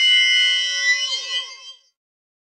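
Short electronic logo sting: a bright, shimmering chime of several high held tones that flutters downward and dies away just before the end.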